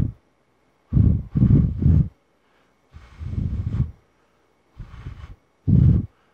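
Breath puffed straight onto an Arcano ARC-MICAM electret condenser shotgun microphone fitted with its standard foam windscreen, picked up as low rumbling wind-noise bursts. It is a wind-noise test of the foam. There are several short puffs, with a longer one about three seconds in.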